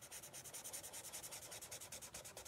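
Black Sharpie marker scribbling on sketchbook paper, a faint, quick, even run of back-and-forth strokes as a section of the drawing is filled in solid.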